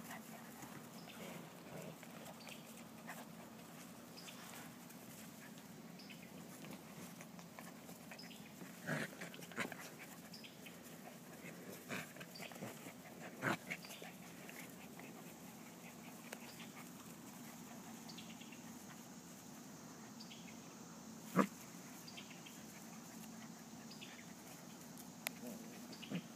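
Eight-week-old puppies play-fighting, mostly quiet, with a few brief puppy sounds scattered through, the loudest about three seconds before the end.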